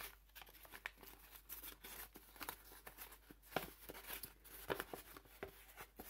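Brown kraft wrapping paper handled and unfolded by hand: quiet, irregular crinkling and rustling, with a few sharper crackles past the middle.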